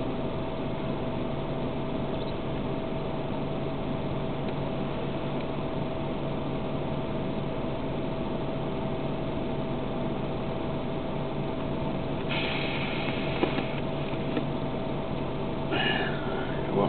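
A car's heater fan blowing hard from the dash vent right in front of the microphone: a steady rushing hum with a constant low drone. There is a brief louder hiss about twelve seconds in.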